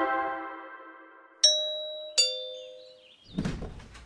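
A scene-change music sting fading out, then a two-tone ding-dong doorbell chime, a higher note followed by a lower one, each ringing on and fading away.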